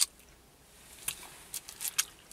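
Quiet eating sounds from a foil-wrapped kebab: chewing with a few short clicks and crinkles, one about a second in and several close together near the end, as a plastic fork picks at the food in its aluminium foil.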